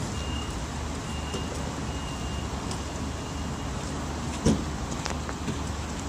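Long Island Rail Road bilevel commuter train pulling away from the platform, a steady low rumble. A faint high tone sounds on and off over the first few seconds, and a single sharp thump comes about four and a half seconds in.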